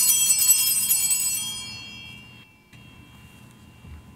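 Altar bells rung at the elevation of the host during the consecration, a bright ringing of several high tones at once. They are loud for the first second or two, then fade away, with one high tone still lingering faintly near the end.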